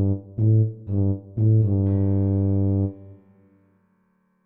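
Tuba melody line playing three short detached low notes about half a second apart, then a longer held note that dies away about three seconds in, leaving silence for a rest in the score.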